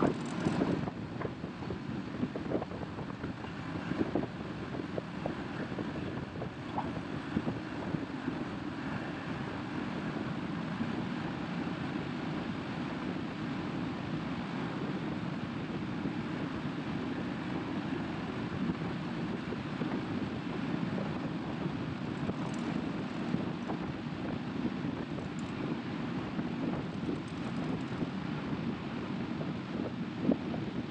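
Caterpillar 535D log skidder's diesel engine running steadily as the machine drives along a paved road, with wind buffeting the microphone. A few short clunks and rattles in the first several seconds.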